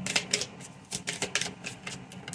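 A deck of tarot cards being shuffled by hand: a quick, irregular run of card flicks and slaps.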